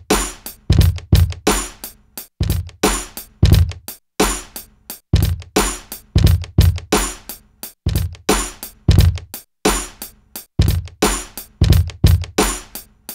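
Ensoniq ASR-X sampler's sequencer playing back a boom-bap drum pattern of kick, snare and hi-hat at 88 beats per minute, quantized, with no swing, in a steady repeating loop.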